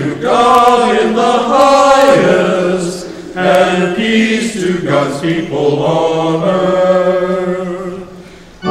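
Congregation singing a chanted liturgical response together, in two phrases with a short break about three seconds in; the singing stops near the end.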